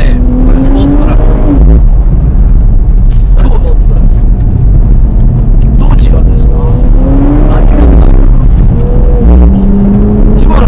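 Nissan Fairlady Z NISMO's twin-turbo 3.0-litre V6 heard from inside the cabin under hard acceleration, its note climbing in pitch and dropping back at each upshift several times, over a heavy low rumble.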